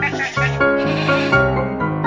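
A goat bleating twice over background piano music.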